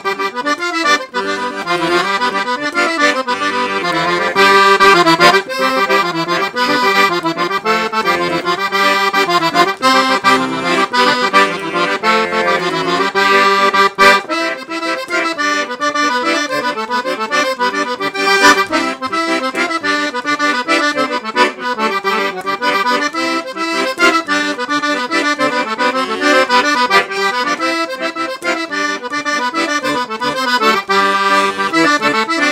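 Serenelli Acarion piano accordion, 41 treble keys with four-reed LMMH tuning and 120 bass buttons, playing a tune with melody on the treble keys over bass-button accompaniment.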